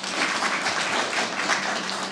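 Audience applauding: many hands clapping in a steady, even patter as a speech ends.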